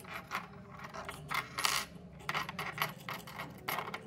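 Steel tremolo springs from an Ibanez Edge III tremolo kit being handled: irregular light metallic clinks as the springs knock together, mixed with the crinkle of the plastic zip bag they are pulled from.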